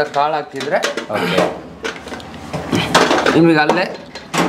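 Men talking, with a few knocks and clatter as the atta maker's cabinet lid and fittings are handled.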